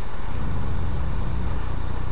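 Steady low rumble with an even hiss over it: the background noise of an open web-conference audio line.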